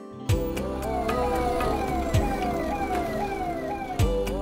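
Ambulance siren sounding in quick repeated falling sweeps, about two a second, starting suddenly just after the start, mixed with background music and a few low drum hits.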